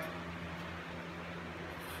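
Steady low hum and faint hiss of room tone, with no distinct event.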